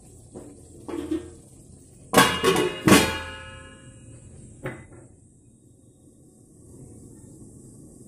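A metal lid is set down on a metal kadhai: two clanks under a second apart, ringing briefly, then a lighter knock. This is the pan being covered so the noodles can finish cooking.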